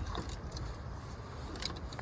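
A bass being lowered back into the water at the side of a boat: a few short splashes and drips near the end, over a steady low rumble of wind on the microphone.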